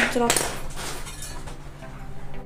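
Small serum pump bottles being handled: light clicks and knocks as the hard bottles and caps are turned and tapped in the hands.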